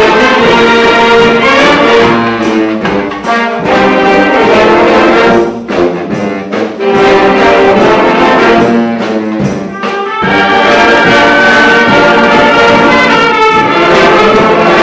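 A youth wind band of flutes, saxophones and brass playing a piece together, loud and full, with brief lulls between phrases in the middle.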